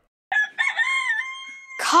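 A rooster crowing once: a few short notes run into a long held final note. Music and singing start just at the end.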